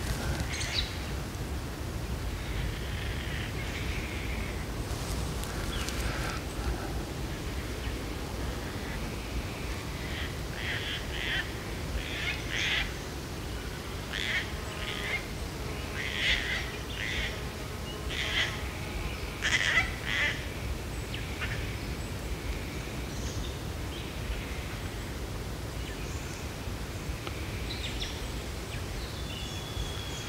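Gang-gang cockatoos calling: short, creaky calls like a squeaky door, scattered throughout and coming thickest in the middle stretch, over a steady low rumble.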